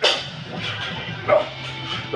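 Background music with short, strained grunts from a man pressing heavy dumbbells; the loudest grunt comes just past halfway.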